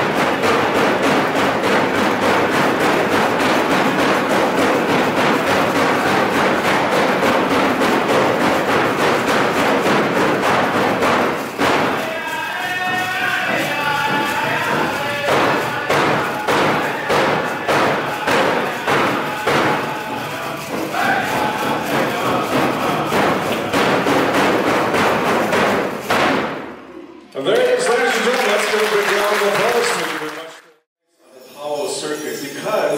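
Powwow drum beaten in a steady, even rhythm, with singers' voices carried over the beat. Near the end the drumming breaks off.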